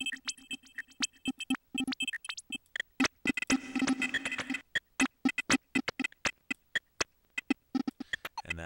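Glitch-style electronic drum pattern from a Reason 4 Redrum drum machine, played through Scream 4 distortion and delay effects: rapid, stuttering clicks and short hits, many over a steady low tone. It turns denser and noisier for about a second in the middle, while the distortion ("damage") is switched on.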